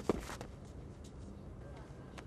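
A man's short grunt falling in pitch just after the start, with a couple of sharp clicks, then only faint steady background hiss.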